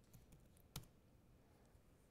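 Faint keystrokes on a computer keyboard: a few light taps, then one sharper key press a little before the middle, as a short terminal command is typed and entered.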